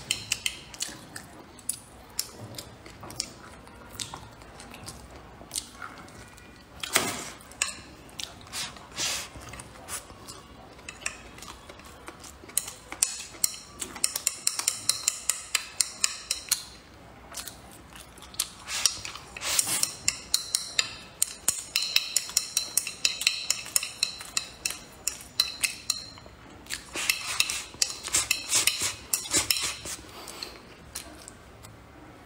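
Chopsticks tapping and scraping against a ceramic rice bowl as the last rice is scooped out. The taps come in long rapid runs of sharp clicks, with a few single knocks between.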